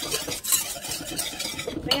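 Silicone spatula stirring thickening vanilla custard in an enamel saucepan: a continuous run of quick scraping strokes against the pan's bottom and sides.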